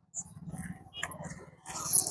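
Quiet handling of a handbag at its zip: faint rustles and small scratchy sounds, a little louder near the end.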